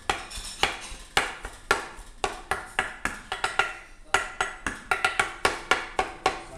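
A curved steel cleaver chopping börek and striking the metal baking tray in a rhythmic cutting pattern. The sharp, ringing clacks come about two a second, then faster in quick groups in the second half.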